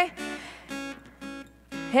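Acoustic guitar strumming a few short chords, the lead-in to a sung gospel chorus.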